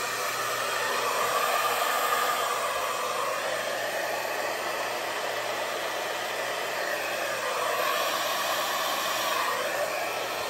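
Handheld hair dryer blowing steadily on wet fluid acrylic paint, pushing it out into a bloom. The blowing swells a little louder twice as the dryer is aimed and moved, once early and once near the end.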